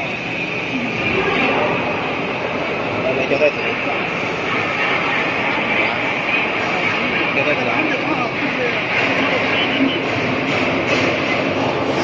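Flexo printing machine with its die-cutting unit and conveyor running steadily, a continuous mechanical noise, with indistinct voices mixed in.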